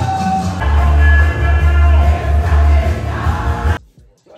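Loud amplified church music with singing, a heavy bass coming in about half a second in. It cuts off suddenly near the end.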